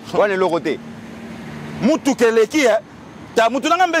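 A man speaking in three short bursts. Between his phrases a steady low engine hum from a road vehicle runs on, dropping slightly in pitch just before the second burst.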